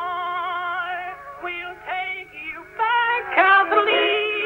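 Early phonograph recording of a singer with vibrato, its sound thin and cut off above the middle range. A held note gives way to several short notes that each slide up into pitch, with a louder rising phrase near the end.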